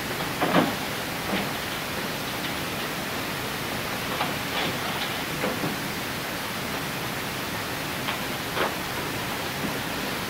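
Steady hiss of background recording noise, with a few faint short clicks.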